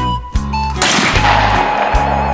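Background music with a steady bass beat, and a single shotgun shot a little under a second in, the loudest sound, with a long fading tail.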